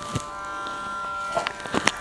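A steady, quiet buzzing hum made of several held tones, with a few soft clicks in the second half.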